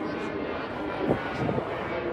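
A steady drone of an aircraft engine, a plane passing overhead.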